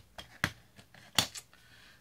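A few light plastic clicks and taps from a clear acrylic stamp and block being picked up and handled on a cutting mat, the sharpest click a little past the middle.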